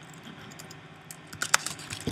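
Keystrokes on a computer keyboard as a name is typed: a few scattered key presses, then a quick run of several keys about one and a half seconds in.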